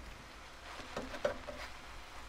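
Faint, scattered light taps and clinks of kitchenware being handled: a glass mixing bowl picked up beside a skillet on the stovetop.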